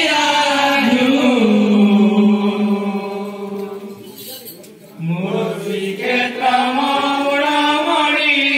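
A group of men chanting together in long held, gliding notes. The chant fades about halfway through and comes back in full just after five seconds in.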